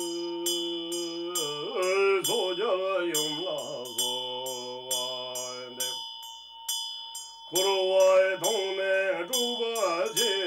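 A man chanting a Tibetan Buddhist mantra in long held notes with wavering slides in pitch, over a Tibetan ritual hand bell (drilbu) struck about twice a second and ringing steadily. The voice breaks off for about a second and a half past the middle while the bell rings on.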